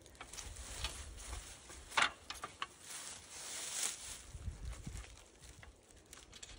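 Rustling and scattered light clicks and knocks from handling a climbing tree stand and its rope, with one sharper knock about two seconds in.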